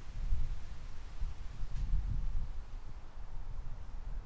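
Low, uneven background rumble with no distinct event.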